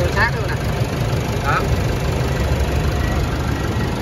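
Isuzu MU-X's 1.9-litre four-cylinder turbodiesel idling steadily and quietly, heard over the open engine bay, with the air conditioning switched on.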